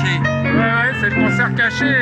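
Live music played on two electric stage pianos, a Nord Piano 2 HP and a Yamaha, with sustained chords and a voice over it.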